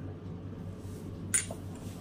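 Room tone with a steady low hum, broken by a single short spoken word about a second and a half in.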